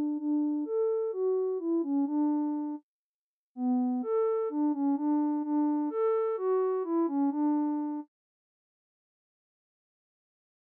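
A short synthesizer melody, the same phrase of about a dozen notes played twice with a brief gap between. The tone is a saw wave softened by a steep low-pass filter: mellow, with the upper harmonics fading out. The second pass is a little brighter.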